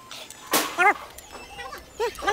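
An animal yelping: two short, high-pitched cries about half a second in, each rising and falling in pitch, followed by fainter ones.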